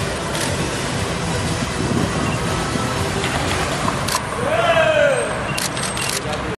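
Voices of a crowd of people over steady outdoor background noise, with a few sharp clicks. A person's loud drawn-out call rises and then falls in pitch about four and a half seconds in.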